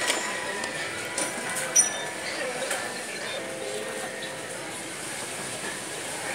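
Eatery background: indistinct voices with a few sharp clinks of utensils or dishes, the loudest about two seconds in.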